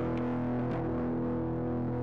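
Music: a distorted electric guitar chord held and ringing on steadily.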